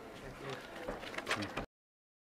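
Indistinct chatter of several people talking at once in a hall, with a few light knocks, cut off suddenly to dead silence near the end.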